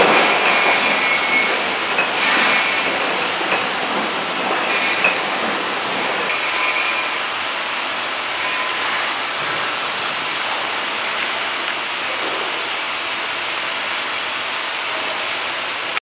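KT-250B horizontal flow-wrap packing machine running at a steady, continuous mechanical noise, with a faint squeal early on and a few brief hisses in the first seven seconds.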